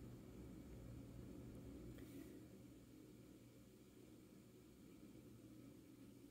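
Near silence: faint room tone with a steady low hum and a faint tick about two seconds in.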